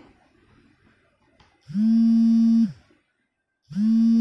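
Two loud buzzing tones of steady pitch: the first about a second long, the second shorter and cut off sharply.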